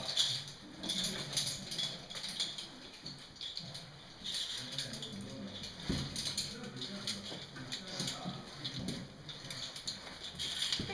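Faint, indistinct human voices, with a few scattered knocks, the clearest about six seconds in.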